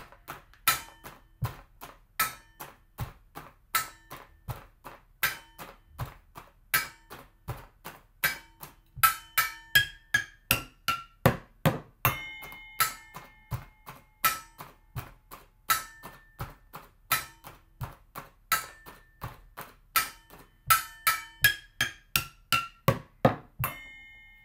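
Improvised drum kit of kitchen cookware played with drumsticks: pot lid as snare, floor as bass drum, a crispbread package as hi-hat, pots and a bucket as toms. A basic rock beat runs for three bars, then a fill of quick strikes across the ringing pots leads into a ringing crash on a metal lid. The sequence happens twice.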